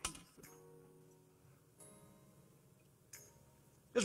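Soft background music with quiet, sustained instrumental notes, broken by a sharp click at the very start and a few fainter clicks later on.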